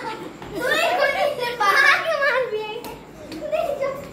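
Children's voices: excited, high-pitched calling and shouting without clear words, in several bursts.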